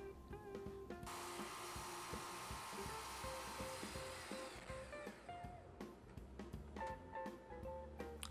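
A Festool Kapex miter saw cutting a board. Its blade noise starts abruptly about a second in and dies away by about halfway, faint beneath quiet background music.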